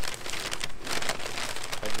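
A fast-food paper takeout bag and a paper burger wrapper rustling and crinkling in a dense run of rapid crackles as they are handled and unwrapped.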